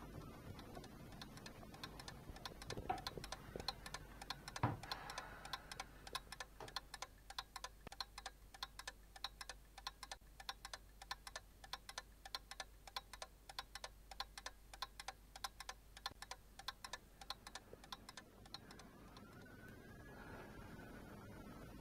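Faint, even ticking of clocks, about three ticks a second. Near the start there are a few handling knocks and one louder thump.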